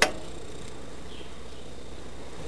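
A single sharp metallic click as the steel locking pin on a carriage swing equalizer is worked free by hand, followed by a steady background hiss.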